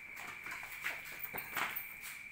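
A few faint knocks and footfalls on a hard floor, irregularly spaced, over a faint steady high-pitched tone.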